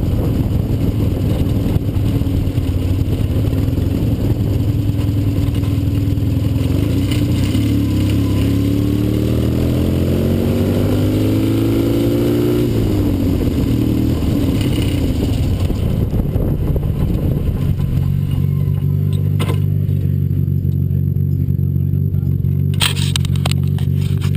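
Onboard sound of a Fiat 126-engined single-seater race car's two-cylinder engine: it climbs in revs for a few seconds, drops off sharply about halfway through, then settles to a steady low running as the car rolls slowly to a stop. A few sharp clicks near the end.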